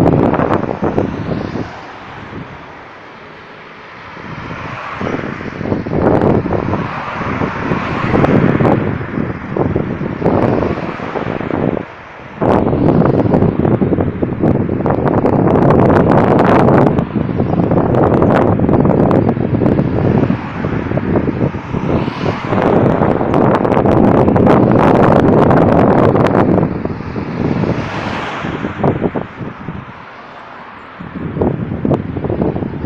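Road traffic: cars passing one after another, their tyre and engine noise swelling and fading, with wind buffeting the microphone.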